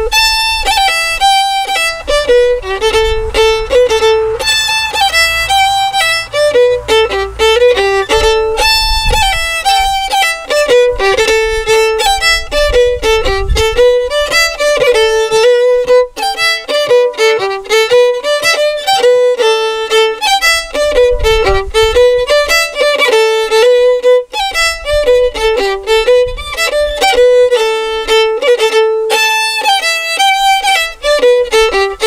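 Solo fiddle playing a traditional tune in A minor (Dorian), a continuous melody of quick bowed notes with no pauses.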